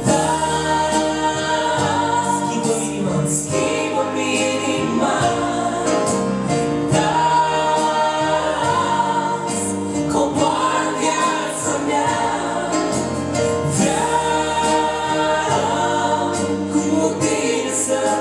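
A woman and a man singing a Romanian Christian worship song as a duet, with electronic keyboard accompaniment and long, held notes.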